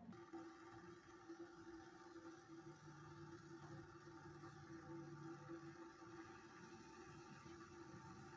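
Near silence: a faint steady hum with a few held tones, one of which comes in about three seconds in and drops out near six seconds.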